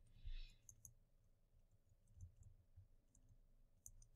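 Near silence with a few faint clicks and a brief soft hiss just after the start.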